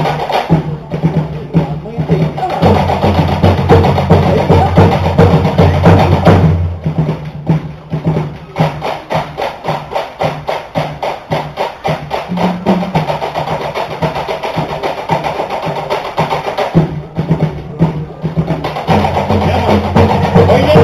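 Tahitian drum ensemble: wooden to'ere slit drums beating fast, even rolls over a deeper drum, the rhythm changing pattern a few times.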